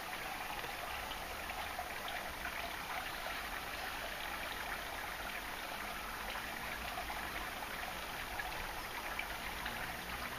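Steady, even outdoor background noise with a running-water-like hiss and no distinct events.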